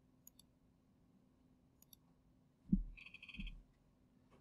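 Faint computer mouse clicks as layers are switched on and off, then near the end two soft low thumps with a brief, rapid, high-pitched rattle between them.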